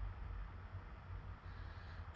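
Faint room tone: a steady low hum with light background hiss.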